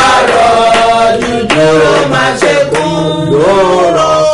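A man singing a slow worship chant in long held notes that glide up and down.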